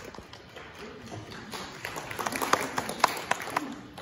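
Scattered hand clapping from a small congregation, swelling over a couple of seconds and dying away near the end.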